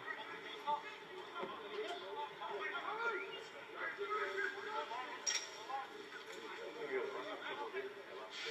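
Indistinct voices of spectators and players around the field, calls and chatter that come and go, with a short sharp click about five seconds in.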